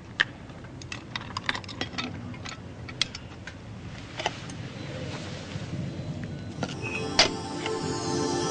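Scattered light clicks and taps at an uneven pace, then soft background music comes in near the end with sustained chords.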